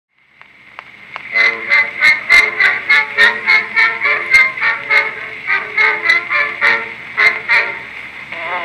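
Two-minute wax cylinder record playing on a Columbia AT Graphophone through its brass horn: surface hiss and a few clicks as the stylus starts in the groove, then, about a second in, the record's instrumental introduction. It sounds thin and mid-range with little bass, with about three accented beats a second.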